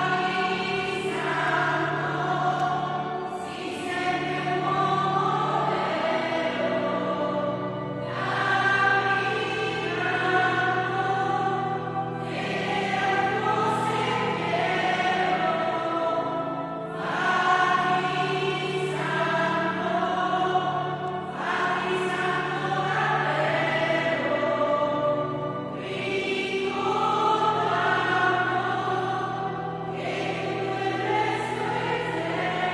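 Church choir singing a hymn in phrases of a few seconds, over steady sustained low notes from a keyboard accompaniment.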